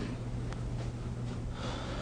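A person drawing a soft breath close to the microphone near the end, over a steady low electrical hum.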